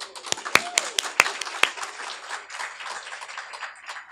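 Audience applauding. A few loud, close claps stand out in the first second or two over steady clapping from the room.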